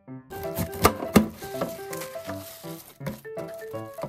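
Background music: a bright keyboard melody of short notes, with a crackly rustling and sharp clicks under it from just after the start, the loudest click about a second in.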